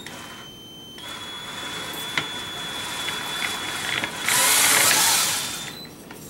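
Cordless-drill motor driving a Woodward bead roller's rollers: a steady high whine that dips in pitch for about the first second, then holds steady. Near the end comes a louder noisy stretch of about a second and a half.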